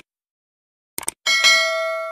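A couple of short clicks, then a bell-like chime struck once about a second and a quarter in, ringing out with several clear pitches and slowly fading.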